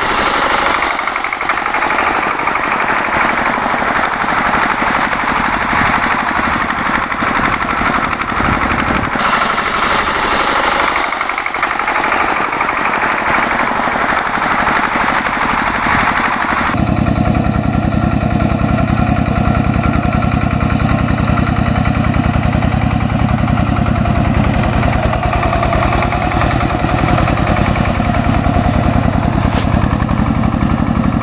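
A power tiller's single-cylinder diesel engine running under load as it works a wet, muddy field, with a fast, steady knocking chug. About two-thirds of the way through the sound turns abruptly fuller and deeper.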